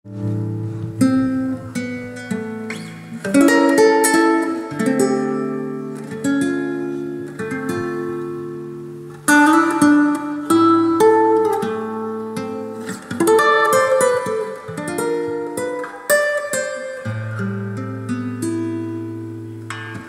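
Acoustic guitar music: slow plucked and strummed chords that start sharply and ring out, fading between strokes.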